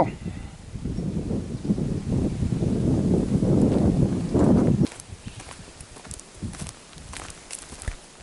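A loud, uneven low rumble for about five seconds that cuts off suddenly. After it come scattered footsteps on dry, leaf-littered ground.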